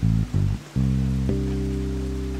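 Electric bass guitar playing alone: a few short plucked low notes, then a low note held from just under a second in, slowly fading as it rings.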